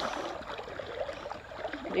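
Creek water flowing, a steady soft rush. This is a fast, strong current.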